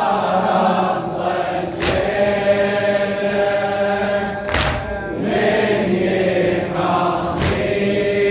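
A congregation of men chanting a Shia mourning lament (latmiya) in unison, in long held notes. A sharp slap lands on a slow, even beat about every three seconds, the mourners striking their chests together.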